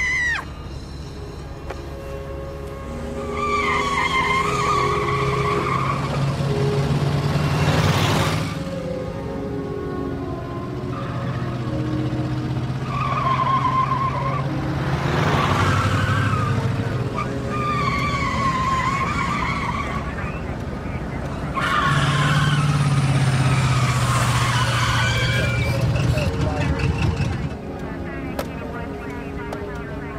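Car engines running hard, with tyres squealing about four times a few seconds apart and brief rushing noise as cars pass.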